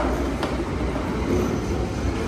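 Steady low rumble of a London Underground train running in the tunnel, heard from the platform, with a faint high whine about halfway through.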